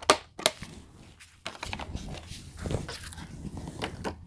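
A couple of sharp clicks from a metal steelbook case being handled, then plastic rustling and crinkling as the case is slid into a clear plastic slipcover.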